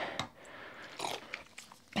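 A plastic bottle of vinegar being squeezed to squirt into a pot of dye water: faint crackles and small clicks, with a brief hiss about a second in.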